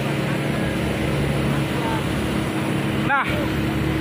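Fire engines' pumps running with a steady low hum, under the even rushing noise of hoses spraying water onto a burning tanker truck.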